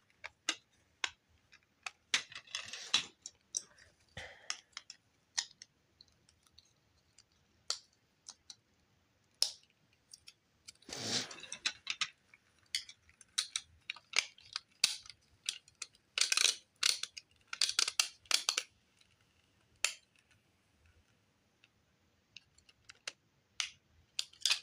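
Plastic building-brick pieces clicking and clattering as they are handled and pressed together, in scattered clicks with a busier run of them near the end.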